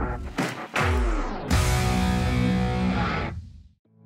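Music stinger for an animated title: quick swooshes and a deep falling sweep, then a loud hit about a second and a half in that rings out and fades away just before the end.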